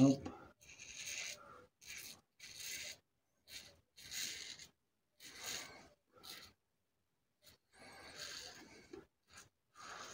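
Parker Variant double-edge safety razor with an Elios blade scraping lathered stubble on the neck in short upward strokes: a rasping scrape roughly once a second, with a brief pause about two-thirds of the way through.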